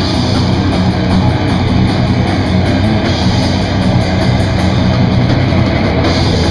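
Live heavy metal band playing loud: distorted electric guitars over fast drumming with a rapid stream of cymbal hits.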